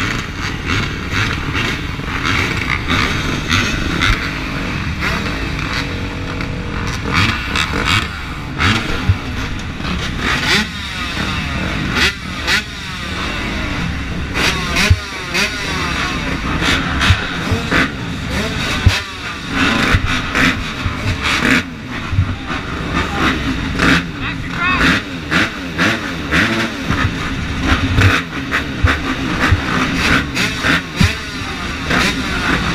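Several motocross bike engines idling with short revs of the throttle, the nearest one close to the helmet-mounted microphone.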